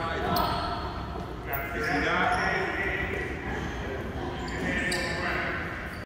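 Indistinct voices of players and coaches calling out across a large gym, echoing off the hall, with the general shuffle of a practice going on.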